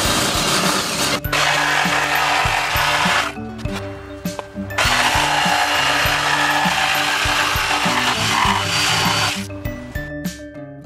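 An electric drill boring a starter hole through taped plywood, then a corded jigsaw cutting out a circular hole. The tools run in two long spells with a short pause about three seconds in.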